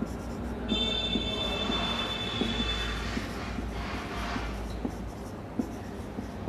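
Whiteboard marker writing: short rasping strokes with small taps as it touches the board. About a second in, a steady high-pitched squeal holds for about two seconds, then stops.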